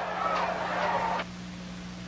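Background noise of an old race-track broadcast recording over a steady low hum. The noise cuts off abruptly just over a second in, leaving only the hum and a faint hiss.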